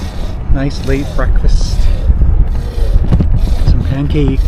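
Loud, steady low rumble of wind buffeting the microphone of a camera on a moving bicycle, with a few words of a man's voice over it.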